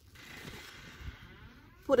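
Faint rustling of loose potting compost as a hand works a yam tuber down into it, ending in a spoken word.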